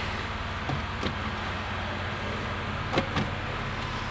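Lexus RX350's V6 idling, a steady low hum heard inside the cabin, with a few light clicks about a second in and again about three seconds in.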